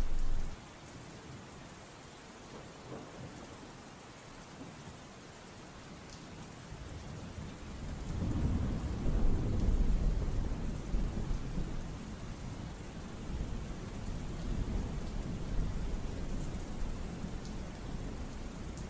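Steady rain falling, with a long roll of thunder that builds about seven seconds in, is loudest a couple of seconds later, then keeps rumbling more softly.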